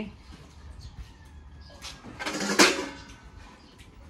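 A plastic colander pulled from a dish rack, a short rattling, scraping clatter with a sharp knock a little past halfway.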